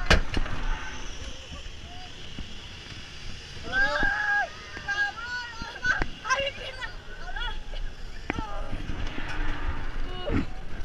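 Ride passengers, children among them, yelling and shrieking in short bursts as the amusement ride swings them, with the longest held cry a few seconds in. Underneath is a steady rushing noise from air moving over the camera microphone, with a few sharp knocks.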